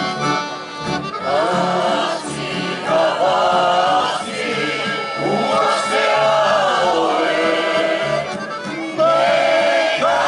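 Mixed choir singing a Croatian song with accordion accompaniment; the voices come in about a second in over the accordion, and the singing grows louder near the end.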